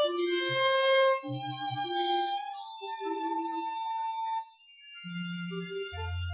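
Slow live instrumental music led by a violin playing long held melody notes, with a lower accompanying instrument underneath; the sound drops away briefly about four and a half seconds in before a low note comes back.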